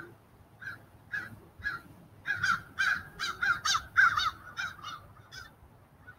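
A bird calling: a run of about a dozen short, repeated calls that come closest together in the middle and stop about half a second before the end.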